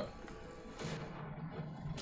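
Anime episode soundtrack playing quietly: background music with a low held tone, and a single sharp impact about a second in.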